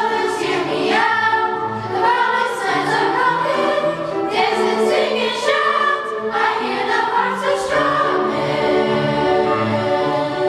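Middle school choir of boys' and girls' voices singing together, with instrumental accompaniment holding low notes beneath them.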